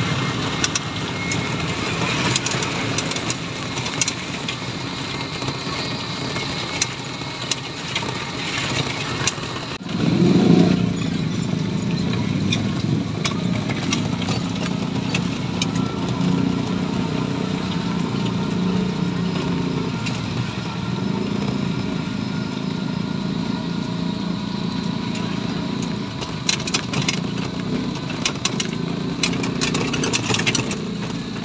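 Ride noise inside a small e-bike cab on a wet street: tyre hiss and spray on the wet road, with light rattling. About ten seconds in, a louder, steady low rumble from nearby motor traffic joins and continues.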